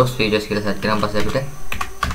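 Computer keyboard keys being typed, a few sharp clicks near the end, under a man's talking.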